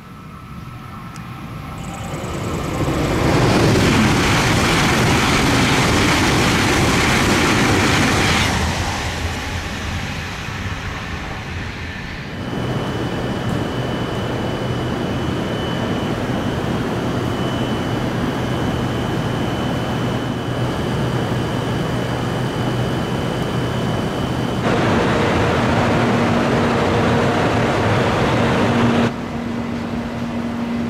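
Shinkansen high-speed test train (JR East E956 ALFA-X) passing at speed: a roar builds over the first few seconds, holds loud for about five seconds, then fades. After that, at a station platform, a train's steady high whine and low hum, with a different low tone setting in about five seconds before the end.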